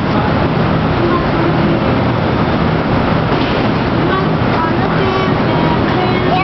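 Steady rush of an exhibit's air blower driving foam balls through clear tubes, with a low steady hum under it.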